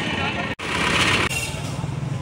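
Street sound of a vehicle engine running with people's voices, broken by an abrupt cut about half a second in.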